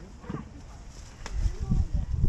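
Brief wordless voice sounds over low, irregular rumbling, with one sharp click about a second and a quarter in.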